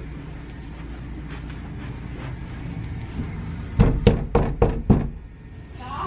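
Five quick knocks on a closed interior door, about four a second, coming in a little before the end after a low steady hum.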